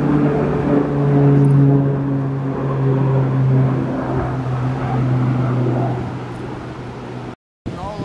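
Propeller engine of a low-flying firefighting plane passing overhead, a steady drone that falls slightly in pitch, then cuts off suddenly about seven seconds in.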